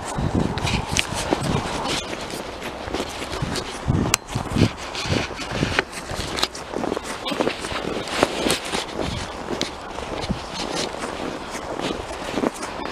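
Footsteps of a person walking along a snow-covered road, coming unevenly.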